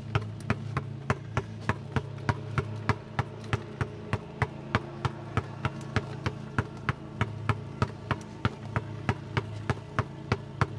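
Basketball dribbled hard on asphalt: sharp, even bounces about three a second, over a steady low hum.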